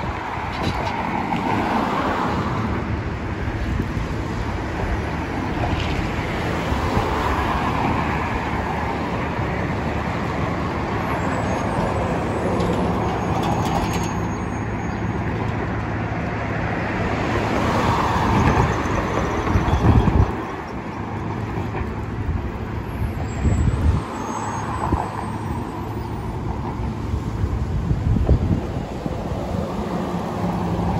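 City street traffic: several cars pass close by one after another, over the steady running of a transit bus at the intersection across the road.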